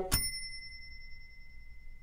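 A single bright bell ding, struck once just after the start and ringing on with a slowly fading tone for almost two seconds.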